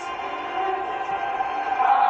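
A steady drone of held tones, swelling louder near the end.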